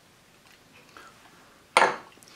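A silicone spatula working mayonnaise into a small glass bowl, mostly faint, with a single short sharp knock near the end.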